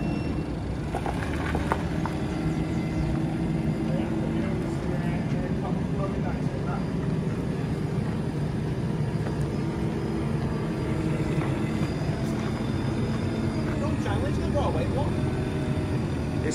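Diesel engine of a compact Merlo telehandler running steadily as the machine carries a mower conditioner on its forks.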